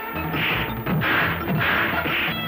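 Dubbed fight-scene hit effects for punches and kicks, three sharp whacks about half a second apart, over the film's background score.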